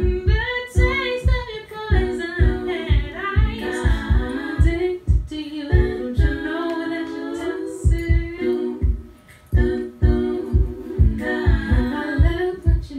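A woman singing a cappella over layered vocal harmonies and a steady low pulse of about three beats a second; the pulse drops out for a moment near the end.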